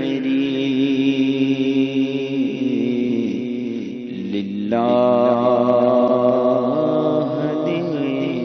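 A man's solo voice chanting an Urdu naat in long, held, wavering notes. A louder new phrase begins a little over halfway through.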